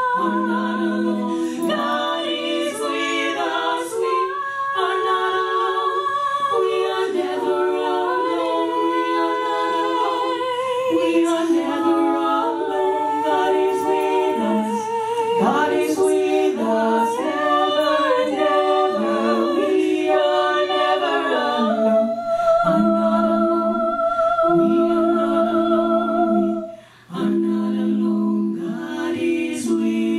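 Women's vocal group singing in close harmony: a lead line with vibrato over held lower notes. Toward the end one long note is held, then a short break just before the end.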